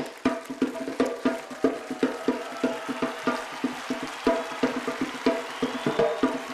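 Backing music for a stage act, driven by a rhythm of sharp wooden clacks, about three a second, over a steady sustained tone.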